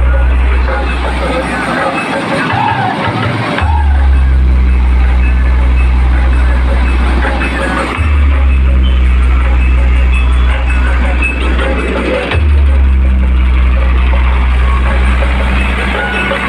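A very loud DJ sound system playing a bass-heavy track. Long, deep sub-bass notes change about every four seconds, with a short break about two seconds in.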